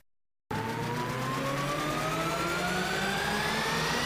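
Silence for about half a second, then the opening of a TV talk show's title music: an electronic riser sweeping slowly upward in pitch over a steady wash of noise and low held tones.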